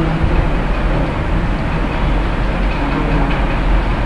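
Steady rumbling room noise with a constant low electrical hum and no clear events.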